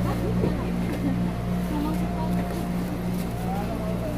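Steady low mechanical hum, like a motor running, with faint voices of people talking in the background.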